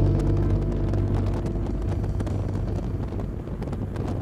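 Wind and road noise of a car driving at speed, with wind buffeting the microphone.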